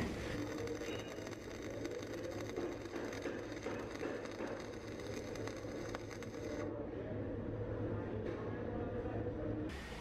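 Stick-welding arc on an E6013 electrode running a vertical-down bead at high amperage: a faint, steady crackling hiss. It sounds duller for about three seconds near the end.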